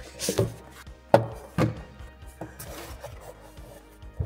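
Handling sounds from unboxing a small plastic-cased mini miner: rubbing and rustling as it slides out of its cardboard box, and a few sharp knocks, the loudest a little over a second in. Quiet background music runs underneath.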